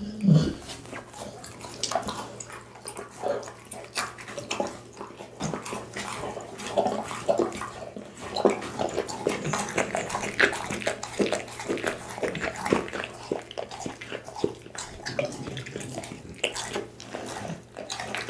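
A pit bull eating raw food close to the microphone: a dense run of wet chewing, smacking and licking sounds. There is a louder low sound right at the start.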